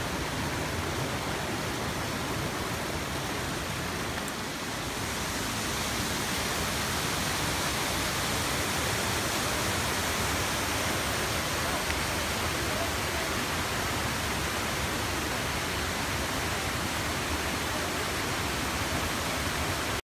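Waterfall rushing over rock: a steady, unbroken roar of falling water that grows a little louder about five seconds in.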